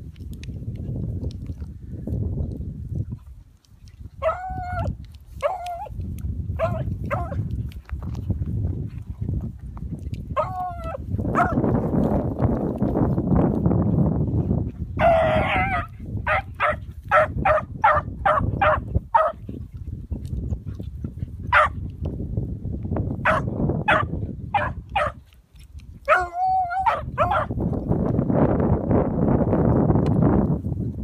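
Two beagles baying as they run a rabbit's trail: several long drawn-out bays and a quick run of about eight short chop barks in the middle, over a steady low rumble of wind on the microphone.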